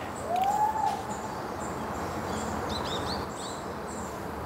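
Steady forest background noise. Near the start a single drawn-out call rises and then falls over about a second, and later a few quick high bird chirps sound from the canopy.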